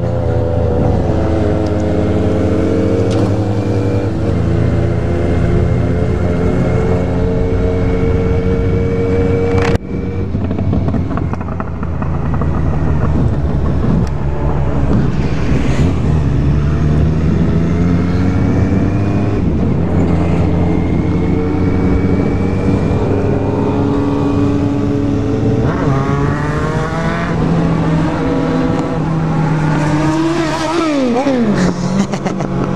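Kawasaki Z750's inline-four engine heard on board while riding, climbing in pitch again and again as it accelerates through the gears, over steady wind rush.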